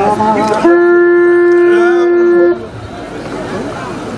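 A wind instrument blown in one long, steady, loud note lasting about two seconds, starting just under a second in and then cutting off.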